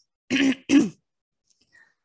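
A woman clearing her throat: two short rasps within the first second.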